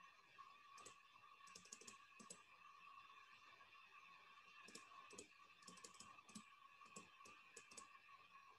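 Near silence with faint clicking at a computer, coming in short clusters of a few quick clicks about a second in, around two seconds in, and again from about five seconds on, over a faint steady hum.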